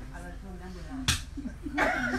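A single sharp slap or knock about a second in, with voices around it.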